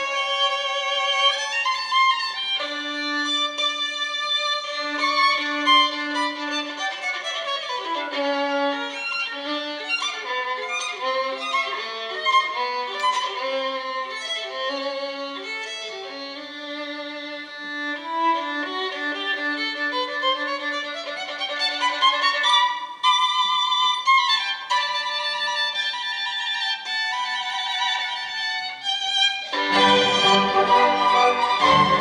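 Solo violin playing unaccompanied, a fast passage of running notes that sweeps down the instrument and then climbs back up, with a brief break near the end.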